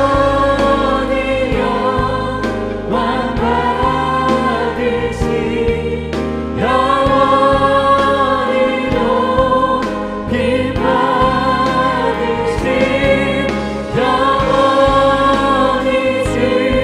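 Live worship song: a man sings long held phrases into a microphone over instrumental accompaniment, the notes wavering with vibrato.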